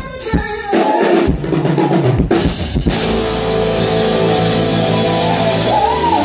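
A live band of drum kit, bass, electric guitar and keyboard. It plays several drum strikes in the first three seconds, then holds one steady chord under a cymbal wash from about three seconds in.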